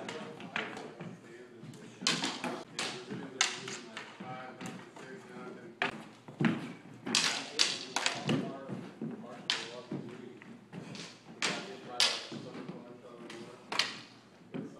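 Training longswords clashing in a sparring bout: many sharp, irregular clacks and knocks of blade on blade and on padded gear, mixed with dull thuds.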